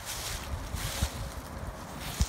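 Wind buffeting the microphone in uneven low gusts, with a soft hiss that swells and fades above it.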